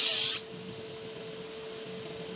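Fiber laser marking machine engraving a metal thermos cup: a loud hiss from the beam striking the metal, which cuts off about half a second in as the marking finishes. A steady hum continues underneath.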